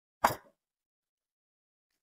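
One short thump about a quarter of a second in.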